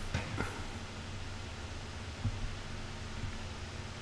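Faint steady hiss of room tone with no speech, broken only by a couple of tiny soft low bumps.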